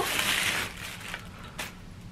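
Clear plastic bag crinkling as a folded tripod is pulled out of it, dying away after about half a second, followed by a couple of faint clicks.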